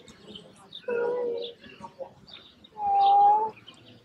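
A young puppy whimpering: two short, steady high-pitched whines, about a second in and about three seconds in, the second louder.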